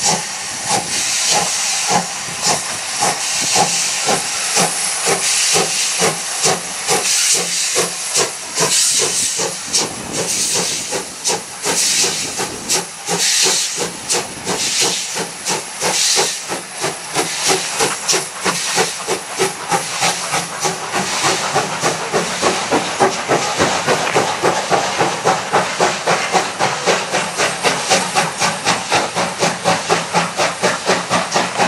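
Two-cylinder DR class 52 2-10-0 steam locomotive 52 1360-8 accelerating with a train: its exhaust chuffs come steadily faster, over a constant hiss of steam from the open cylinder drain cocks.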